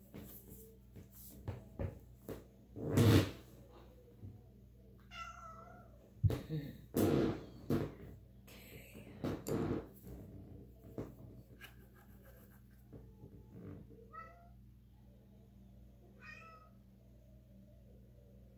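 Domestic tabby cat meowing in short calls, once about five seconds in and twice near the end. Louder knocks and rustling from something being handled come around three seconds in and again between six and ten seconds.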